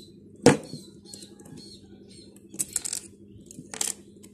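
Small metal parts of a motorcycle kick-start lever clicking and clinking as its folding pivot is fitted together with a thin metal pin by hand. One sharp click about half a second in is the loudest, followed by short runs of lighter clinks near the three-second mark and again near the end.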